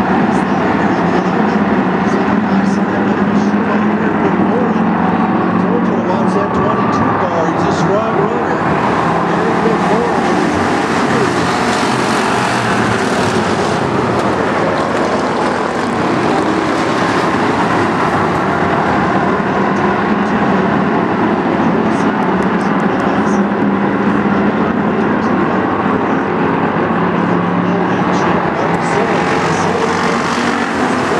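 A pack of Bomber-class stock cars racing together, their engines running loud and steady.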